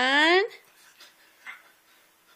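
A dog's whine: one long cry that climbs steadily in pitch and cuts off suddenly about half a second in, followed by faint room sounds.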